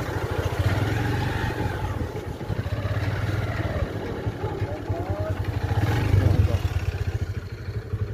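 Motorcycle engine running at low speed as the bike rolls along, its steady low putter swelling a little now and then as the throttle opens.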